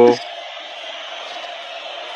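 A man's voice cuts off just after the start, leaving a steady, even background hiss.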